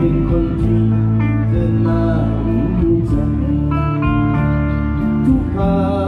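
Live music amplified through a PA: an electric guitar over a steady low bass line, with sustained notes changing in steps and no break in the sound.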